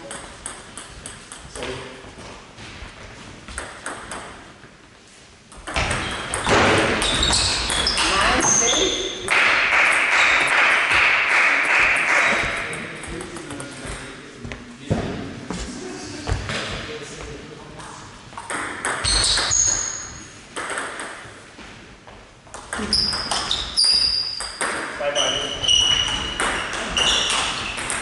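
Table tennis play: the plastic ball clicking sharply off paddles and table in quick rallies, with short high squeaks from shoes on the hall floor. Players' voices rise loudly between points.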